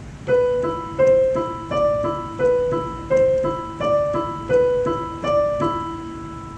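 Piano played with the right hand in a repeating broken-chord pattern on the E chord. The low E is held while the notes B, C and D above it are struck in turn, at an even tempo of about three notes a second.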